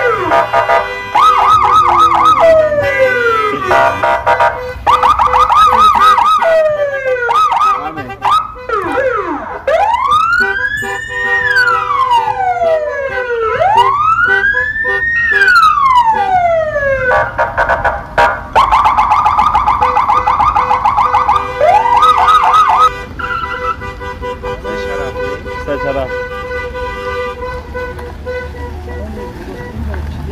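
Car-mounted electronic sirens cycling through their tones: fast trills, short falling swoops and slow wailing sweeps that rise and fall, loud and overlapping. They cut out about two-thirds of the way through, leaving quieter traffic rumble.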